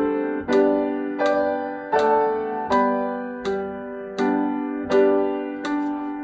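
Grand piano playing a hymn in full chords, one chord struck on each beat at a steady 82 beats per minute, each chord ringing and fading before the next.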